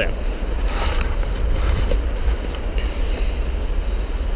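Wind buffeting the microphone as a steady, fluttering low rumble, over a faint hiss of road traffic.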